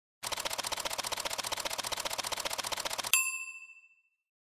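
Logo sting sound effect: a rapid run of ticks, more than ten a second, for about three seconds, ending in a bright ding that rings out and fades.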